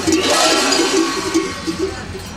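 Large metal bells on kukeri costumes clanking and jangling together as the masked performers move.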